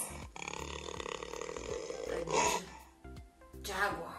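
Jaguar giving hoarse roaring grunts over background music, with two loud grunts in the second half about a second and a half apart.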